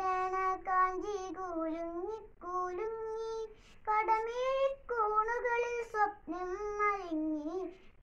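A young boy singing a Malayalam song unaccompanied, in held, gliding notes with short breaks for breath.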